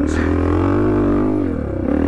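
Yamaha HL500 motocross bike's 500cc four-stroke single-cylinder engine running under steady throttle while riding. The engine note sags briefly about one and a half seconds in, then picks up again.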